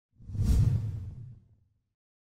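Whoosh sound effect for an animated logo: a single low rush that swells about a quarter second in and dies away within about a second.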